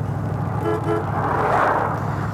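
Car engine running with a steady low hum. About two-thirds of a second in, a car horn gives two quick toots, followed by a swell of rushing noise as a vehicle passes.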